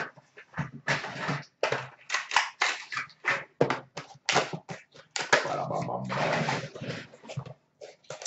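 Cardboard box and card packaging being handled and opened at a counter: a run of short, irregular rustles and crinkles, with a longer rustling, scraping stretch a little past the middle.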